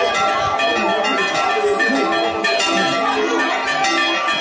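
Church tower bells rung by hand, several bells struck in quick succession in a continuous peal, their tones overlapping and ringing on.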